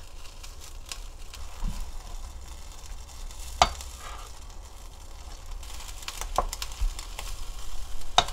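Sour kimchi and pork shank sizzling as they are stir-fried in a pot, the pork giving off its fat. A spatula stirs them, knocking sharply against the pot three times, loudest a little before the middle.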